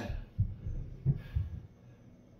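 A few soft, low thumps, four in about a second and a half, just after a spoken count ends.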